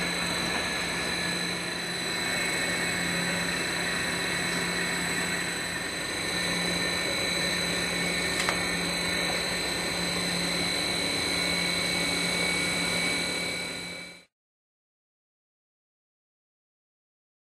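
Quadro Y-Jet in-tank mixer running steadily, a constant motor hum with a high whine over it, while it disperses the oil phase into the egg and water pre-mix. There is one faint click midway, and the sound fades out about fourteen seconds in.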